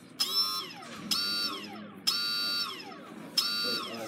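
OpenROV 2.8 brushless thruster motors running at their highest thrust factor in four short bursts, about one a second. Each burst is a high whine that starts suddenly, holds for about half a second, then falls in pitch as the motors spin down.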